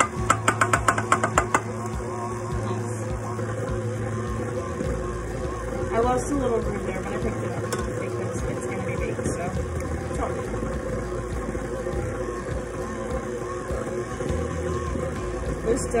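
KitchenAid Ultra Power stand mixer running, its dough hook kneading soft dough in the steel bowl, with a quick run of clicks in the first second or so. Background music plays along with it.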